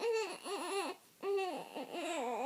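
A two-month-old baby fussing: three or four short, high-pitched rising-and-falling whines in quick succession.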